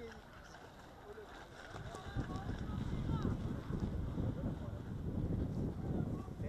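Wind buffeting the microphone: a low rumble that comes up about two seconds in and holds, with faint voices under it.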